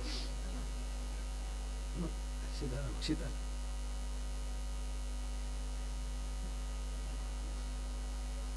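Steady electrical mains hum in the microphone and sound system, with a few faint, brief voice sounds about two to three seconds in.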